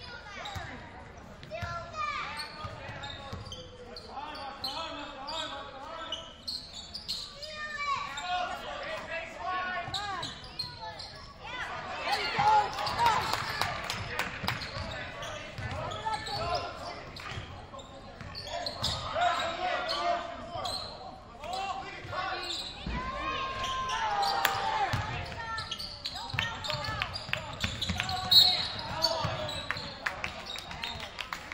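A basketball being dribbled and bounced on a hardwood gym floor during play, with players' and spectators' voices and shouts filling the large gymnasium. Near the end there is one sharp, loud sound, typical of a referee's whistle stopping play.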